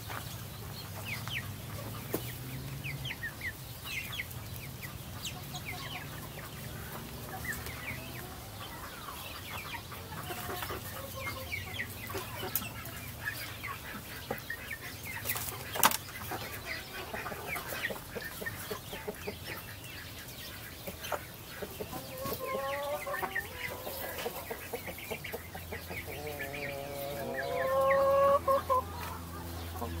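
A flock of chickens clucking and chirping at close range, with one sharp knock about halfway through and a louder, drawn-out call near the end.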